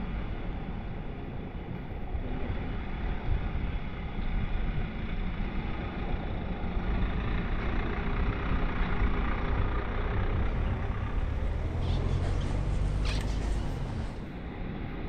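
Street noise of a car driving on wet paving, with wind rumbling on the microphone. A deeper rumble builds over the last few seconds, as of a vehicle drawing close.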